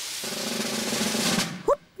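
A snare drum roll on the cartoon soundtrack, growing steadily louder as a build-up, with faint sustained low notes under it. Near the end comes a short rising "whoop" cry.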